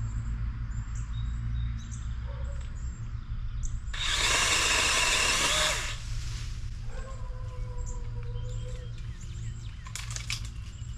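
Battery-powered DeWalt 20V pole saw running in one short burst of about two seconds, a few seconds in, its chain driven hard and cutting off sharply. Birds chirp faintly around it.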